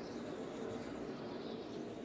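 NASCAR Cup stock cars' V8 engines running at speed, a steady drone as picked up by the trackside broadcast microphones.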